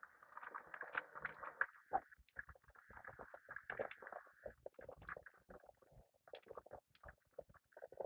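Melted beeswax and hot water pouring slowly from a stainless stockpot onto a cloth filter over a bucket: faint, irregular splashing and trickling that thins out after the first few seconds.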